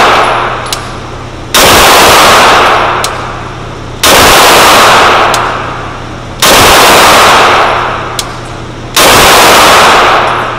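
9mm pistol shots at an indoor range, evenly paced about two and a half seconds apart, four in all. Each is loud enough to overload the recording and trails off over about a second of echo. Fainter sharp cracks fall between them.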